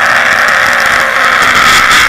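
Two boys yelling loudly together in one long, harsh, unbroken shout.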